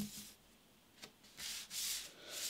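A tarot card is set down on a wooden tabletop with a soft tap. About a second later come short sliding, rubbing sounds as cards and hands brush across the wood.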